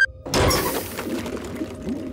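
Cartoon sound effect of a spaceship's engine hatch opening: a sudden loud whoosh about a quarter second in that fades over a second, followed by wobbly, warbling sounds as the engine's jelly-clogged pipes spill out.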